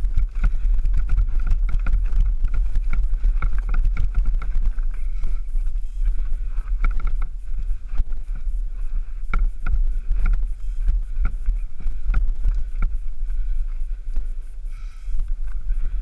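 Wind rumbling on the camera microphone of a mountain bike descending a rocky trail, with the bike rattling and clattering over stones and a faint high whir under it.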